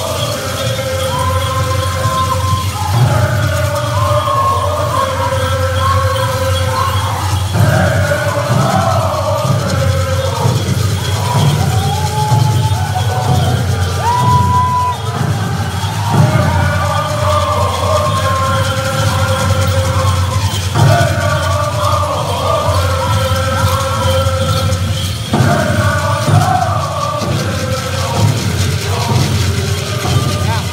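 Pueblo buffalo dance song: a group of singers chanting one song in unison in phrases of a few seconds, over a steady drumbeat.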